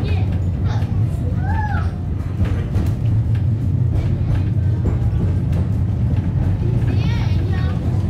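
Wellington Cable Car funicular running through a tunnel, heard from inside the car as a loud, steady low rumble. Short voice-like calls rise over it twice.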